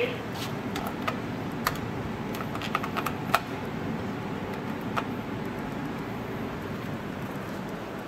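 Guangri machine-room-less elevator car travelling upward, with a steady low running rumble. A series of sharp clicks and ticks comes in the first few seconds, and one more about five seconds in.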